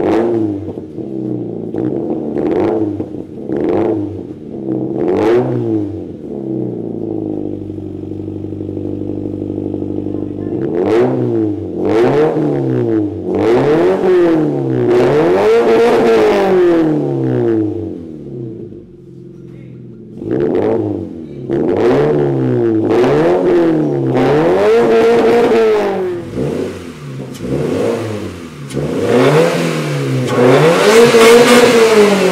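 A Toyota 86's flat-four boxer engine being revved while parked, heard at its quad-tip exhaust. It starts with a few short throttle blips, settles to idle, then goes through runs of repeated revs rising and falling roughly once a second, with a short drop back to idle about two-thirds of the way through.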